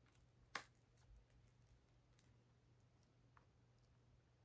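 Near silence with a few faint, short clicks from a fashion doll being handled as an earring is pushed into its ear, the sharpest click about half a second in.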